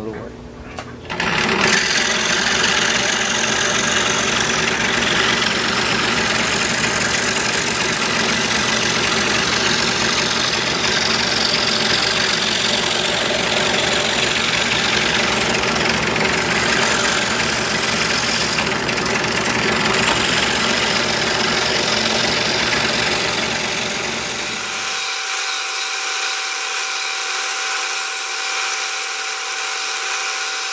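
Pegas scroll saw running and cutting a wood blank, a steady mechanical buzz that starts about a second in. About 25 seconds in the low part of the sound drops away suddenly, leaving a thinner, higher sound with a steady tone.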